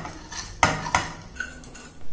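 Steel spoon scraping a crumbly mixture off a stainless steel plate into a steel pot, with a few sharp clinks of metal on metal and one brief ring.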